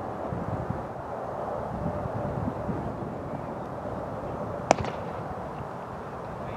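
A single sharp crack of a cricket bat striking the ball, heard once about three-quarters of the way through, with a faint second click just after, over steady outdoor wind noise.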